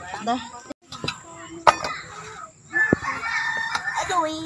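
Chickens clucking and calling, with a held high call in the last second or so, mixed with people's voices and a few sharp clicks.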